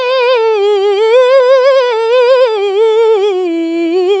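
A woman's unaccompanied Quran recitation in melodic tilawah style: one syllable drawn out in a long, unbroken ornamented run, the pitch wavering up and down and stepping lower toward the end.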